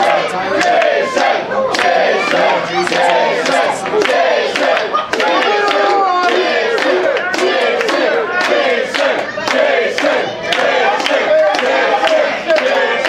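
Wrestling crowd in a hall shouting and yelling together, many voices overlapping, with claps scattered throughout.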